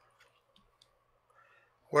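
Near-silent room tone with a few faint, scattered clicks, then a man starts speaking right at the end.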